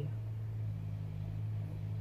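A steady low hum, with nothing else standing out.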